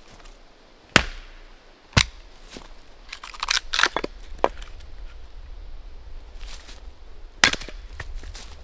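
Axe chopping into wood, splitting log rounds on a chopping block: three sharp, loud strikes about a second in, at two seconds and near the end. Lighter knocks and clatter of wood come in between.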